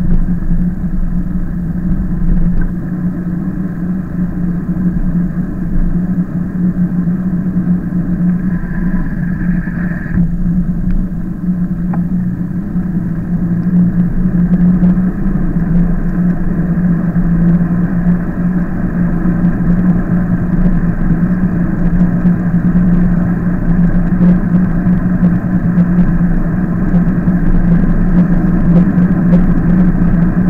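Steady low hum and rumble of an e-bike being ridden along a street, picked up by a camera mounted on the bike, with a brief higher tone about eight to ten seconds in.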